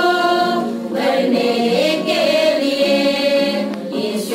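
Women's choir singing a hymn a cappella, holding long sustained notes.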